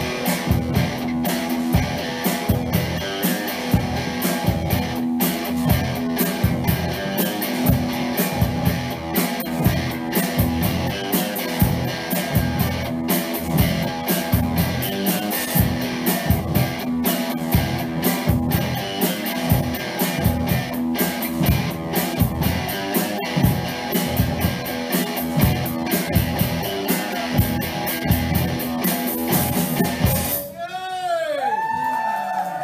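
Rock band playing live: an instrumental passage of electric guitar over a steady drum-kit beat, with no singing.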